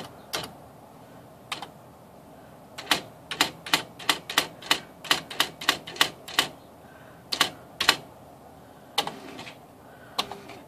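Smith Corona SD 680 electronic daisywheel typewriter printing a test line at 12-pitch spacing: a run of sharp clacks, about three a second, from about three seconds in, with a few scattered strikes before and after.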